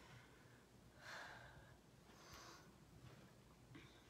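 Near silence, with two faint breaths, about a second and two and a half seconds in, from a person resting on hands and knees just after holding a plank.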